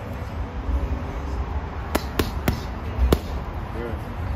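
Four punches from boxing gloves landing on a heavy bag: three quick strikes in about half a second, then a fourth just over half a second later, fitting a jab, cross, hook and left hook to the body. A low rumble runs underneath.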